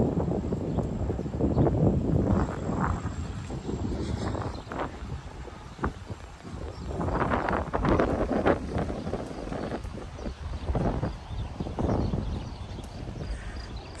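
Footsteps of a person walking outdoors, a run of steady steps, over wind buffeting the microphone.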